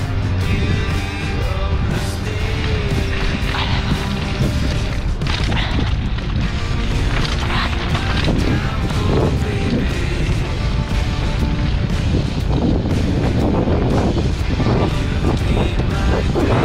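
A mountain bike rolling down dirt singletrack, with steady wind noise on the camera microphone and scattered knocks and rattles from the bike over the bumpy trail. Music plays underneath.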